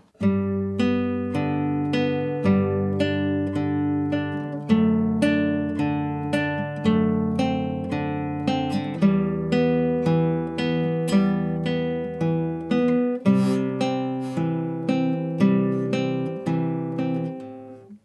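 Handmade nylon-string classical guitar fingerpicked slowly in arpeggios, one plucked note after another, each left ringing. The bass note changes every couple of seconds as the pattern moves through a chord progression that includes D, E minor and C.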